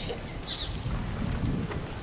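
Low, steady rumble of wind on the microphone, with a short high hiss about half a second in and a faint click near the end.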